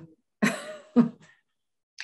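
A person's short breathy laugh: two quick puffs of breath, the second sharper, about half a second apart.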